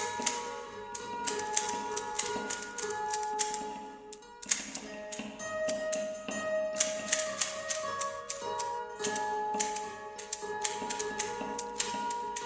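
Experimental music: dense, irregular rattling clicks over held tones that step from pitch to pitch. The clicking thins out briefly about four seconds in, then resumes.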